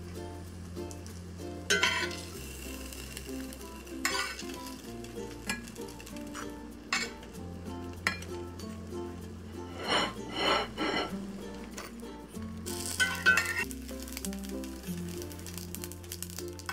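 A metal spatula scrapes and clinks as pan-fried potstickers are lifted from a cast iron pan and set down on a ceramic plate, with the loudest scrapes about ten and thirteen seconds in. Background music with a stepping bass line plays throughout.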